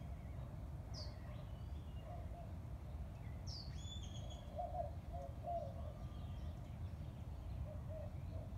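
Outdoor garden ambience: a steady low rumble with a few short bird chirps, one about a second in and another around three and a half seconds, and some fainter calls in the middle.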